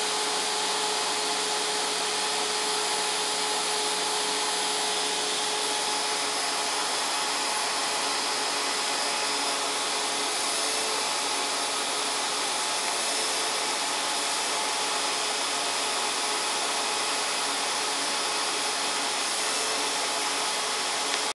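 Vacuum cleaner running steadily: a constant hiss of suction with a steady motor whine, unchanged in level throughout.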